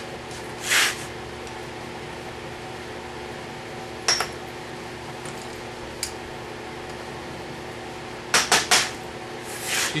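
A few sharp metal clinks and a scrape, with three quick clinks close together near the end, from tools working a freshly cast silver glob out of its mold. A steady hum runs underneath.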